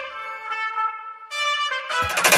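Background music led by a trumpet playing held notes, with a brief quieter gap about a second in.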